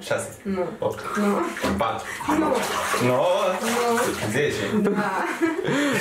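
Water sloshing in a bathtub filled with ice water as a person shifts about in it, with voices talking and laughing over it.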